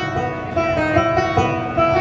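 Banjo and guitar playing a picked instrumental passage of an alt-country song, live and loud, with no singing.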